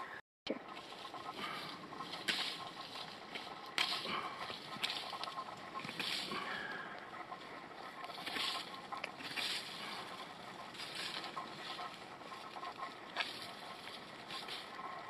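Steel knife blade carving into a dry branch, a series of short scraping strokes coming irregularly, about one every second or so.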